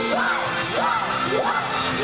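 Idol pop song over the stage PA, with the group singing over a backing track and a rising-and-falling figure repeating about twice a second; the audience cheers along.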